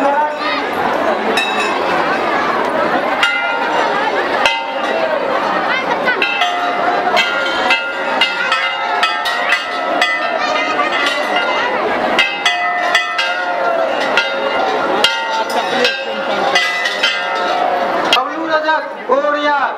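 Brass temple bells struck again and again, their ringing tones overlapping, over the constant chatter of a large crowd.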